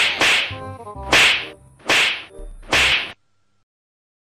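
Five sharp slap or whip-crack hit sounds in quick succession as one man beats another, two close together at the start and then three spaced under a second apart, over faint background music. The sound cuts off abruptly a little after three seconds.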